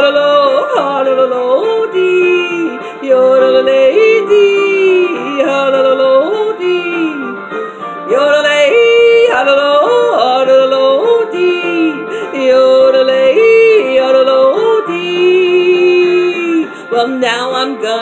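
A woman yodeling, her voice jumping back and forth in quick breaks between a low note and a higher one.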